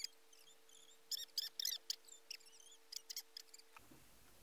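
Quick runs of faint, high-pitched wavering chirps and squeaks, over a steady low hum. The hum cuts off just before the end, where a steady hiss takes over.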